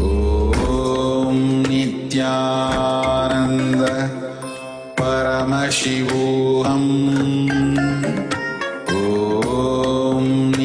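Hindu devotional mantra chanting set to music, sung in long held phrases with a short break just before midway.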